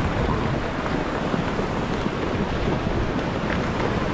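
Steady, loud rush of wind buffeting the microphone, heaviest in the low rumble.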